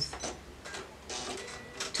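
A few light clicks and a short rustle at a sewing machine as stitched fabric pieces are handled and taken off it.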